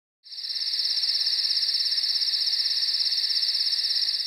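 Crickets trilling at night: a steady, high, rapidly pulsing chirr that fades in just after the start.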